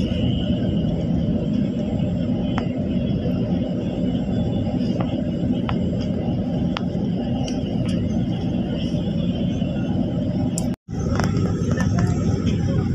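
Steady low rumble of engine and road noise heard from inside a moving bus, with a few faint clicks; the sound drops out for an instant near the end.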